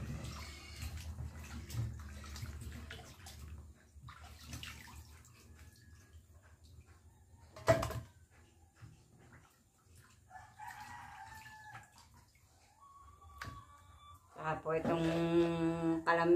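Raw pork being washed by hand in a stainless steel basin of water: splashing and rubbing, loudest in the first few seconds, with a single sharp knock about halfway through. A woman's voice starts near the end.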